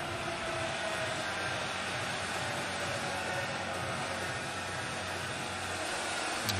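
Steady ballpark ambience on the broadcast: an even wash of background noise with no distinct events.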